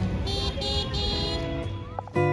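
Outdoor crowd and traffic ambience with a steady low rumble, over which a horn toots three short, high-pitched notes in quick succession.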